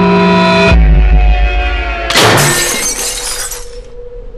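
A held musical chord cuts off under a deep low rumble, and about two seconds in a loud crash of shattering glass bursts out and dies away over a second and a half.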